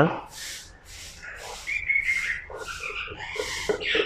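Kitchen knife sawing through the crust of a slice of white bread on a cutting board, in short scraping strokes about two a second, with a few brief high squeaky tones among them.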